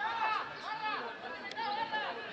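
Several voices shouting and calling out at a distance in the open air, overlapping, with a single faint click about one and a half seconds in.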